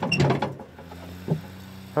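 Brief mechanical clatter from the plastic hopper of the Gator-mounted fertilizer spreader as it is handled, then a low steady hum with one short knock partway through.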